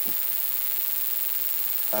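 Steady hiss with a faint low hum, even and unbroken, with no other sound in it.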